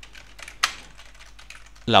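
Typing on a computer keyboard: a quick run of key clicks, with one louder click just over half a second in.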